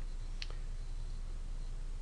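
A single sharp computer mouse click about half a second in, over a steady low hum of room and microphone noise.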